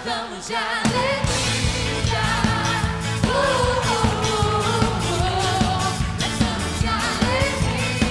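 Live gospel worship music: female singers carry the melody over a band with a steady drum beat. The music drops briefly at the very start and is back in full within a second.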